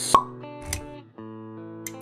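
Logo intro jingle: sustained music chords, with a sharp pop just after the start and a softer pop with a low thump a little before one second in.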